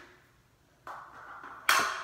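Makeup items being handled: a brief rustle, then one sharp plastic clack near the end, the sound of a compact palette being set down or put away.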